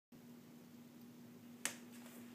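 A faint steady hum, with one sharp click about one and a half seconds in.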